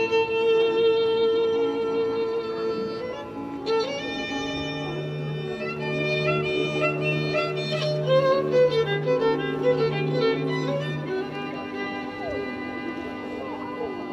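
Slow violin music: a melody of long held notes. A lower bowed part joins in with repeated sustained notes from about four seconds in and drops out about eleven seconds in.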